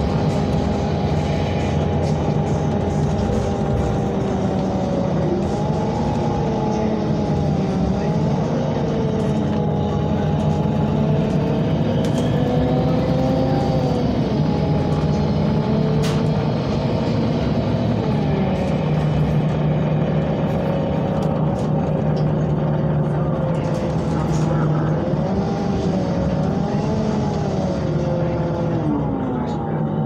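Inside a MAN NL313 Lion's City CNG city bus on the move: the gas engine and driveline run with a steady low drone, and a whine above it slowly rises and falls in pitch as the bus speeds up and slows, over road noise.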